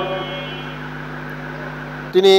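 Steady low hum with a faint hiss of background noise in a pause between spoken phrases.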